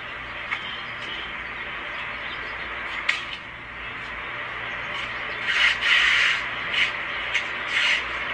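A smartphone being scraped and ground against asphalt pavement: a steady rasping, with two sharp clicks and louder scrapes in the last few seconds.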